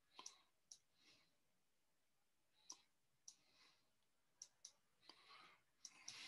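Near silence broken by faint, irregular clicks, about eight of them, with a few soft rustles in between.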